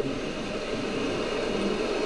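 Steady rushing noise of ocean surf along a beach, even and unbroken, with no single wave break standing out.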